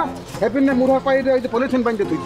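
A voice chanting the same short phrase over and over, a looped vocal line in the background music.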